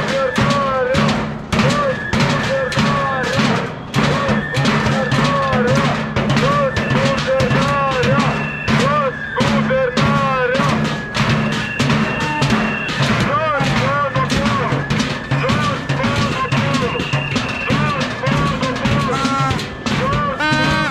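Sticks beaten rapidly and continuously on empty metal barrels, a dense clattering drumming. Over it, a siren-like tone rises and falls about twice a second, and a steady higher tone comes in now and then.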